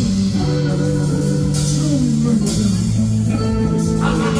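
Live rock band playing: electric guitars over bass guitar and drums, with repeated cymbal crashes.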